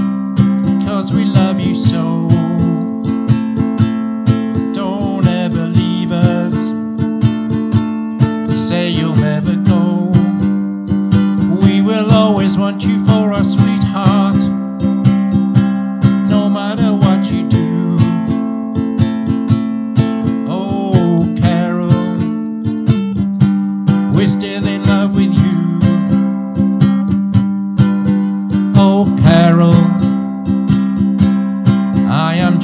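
Music: a strummed acoustic stringed instrument keeps a steady rhythm over sustained chords that change every couple of seconds, with a wavering melody line above.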